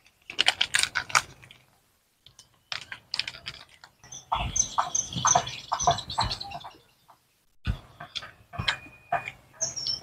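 Plastic chocolate wrappers crinkling as they are torn open near the start, then crisp crunching and chewing of peanut chocolate bars in short spells. Through the middle a bird chirps in a quick series, and another short bird call comes near the end.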